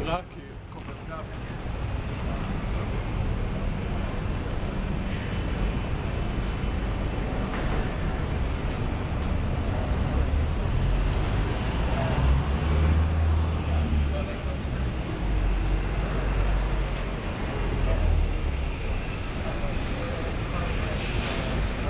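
Busy city street ambience: indistinct voices of passers-by over the low rumble of motor traffic, which swells twice in the second half.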